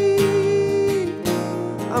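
Acoustic guitar strummed in a steady rhythm, with a man's held sung note over it that bends down and ends about a second in.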